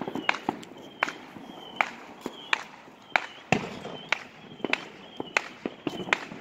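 Neighbourhood fireworks and firecrackers popping irregularly at different distances, with one of the loudest pops about three and a half seconds in. A short high chirp repeats through it about every 0.7 s.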